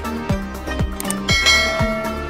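Electronic dance music with a steady kick-drum beat about twice a second. A little past halfway through, a bright bell chime rings out over the music: the notification-bell sound of a subscribe-button animation.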